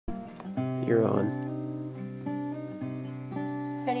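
Acoustic guitar strummed lightly, a chord about every half second, each left ringing into the next.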